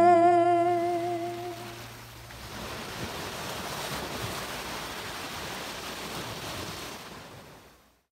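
The last held sung note trails off with an echo effect over the first two seconds, then ocean surf washes steadily and fades out near the end.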